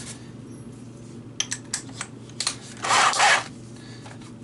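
A cordless drill being handled while a 7/16-inch drill bit is fitted: a few small clicks about halfway through, then a short rasping burst about three seconds in.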